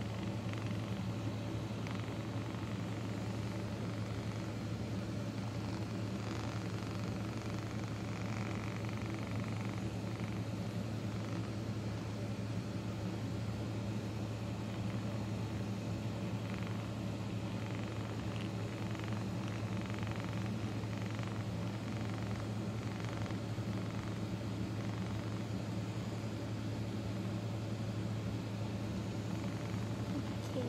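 Handheld massage gun running steadily against a dog's furry back: an even low electric buzz with a few overtones that holds one speed throughout.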